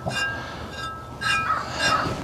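A crow cawing three times, short calls about half a second to a second apart.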